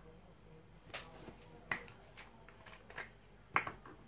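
A few short, sharp plastic clicks, the loudest about three and a half seconds in: a child-resistant cap being twisted off a plastic e-liquid bottle.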